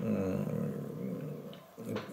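A man's low, closed-mouth hum while pausing to think, fading out about a second and a half in.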